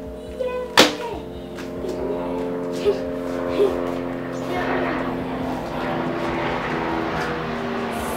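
An airplane passing overhead, its rushing noise swelling through the second half, over background music of steady held notes. A sharp click about a second in.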